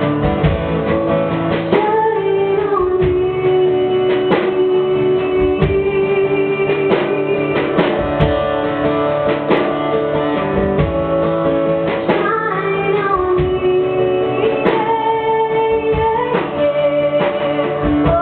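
A woman singing live to her own strummed acoustic guitar, holding long notes that slide between pitches over steady strumming.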